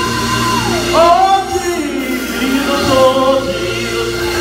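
A group of women singing a gospel song through microphones, with long gliding sung notes over steady held instrumental tones.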